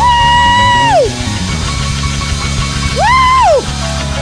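Loud gospel praise-break music, with two high whooping 'woo' shouts over it: one held for about a second at the start and a shorter one about three seconds in.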